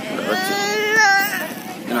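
One person's long, high-pitched shout, held on one pitch for about a second with a slight rise at its end, followed near the end by a short spoken word.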